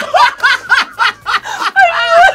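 A person laughing: a quick, loud run of laughs, about four a second.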